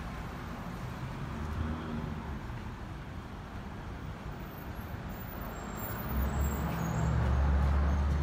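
Motor vehicle engine rumbling over steady traffic noise, the low rumble growing louder about six seconds in.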